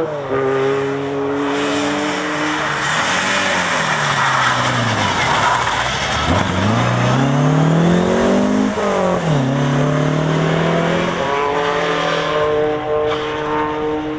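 Toyota Levin TE27 rally car's engine at full effort. The note falls as the car slows for a bend, then climbs sharply as it accelerates out, drops with a gear change about nine seconds in, and rises again before holding a steady note as the car pulls away.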